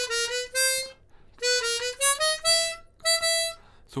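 Hohner chromatic harmonica played solo: three short phrases of clean single notes that step gently upward in pitch, with brief pauses between phrases.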